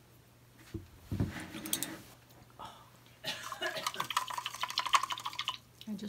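A paintbrush swished and tapped in a cup of water, a quick run of clinks and splashes lasting a couple of seconds, after a knock and rustle about a second in.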